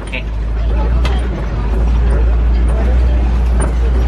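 Steady low rumble of an open-sided safari truck's engine and running gear, heard from a seat on board while it drives along.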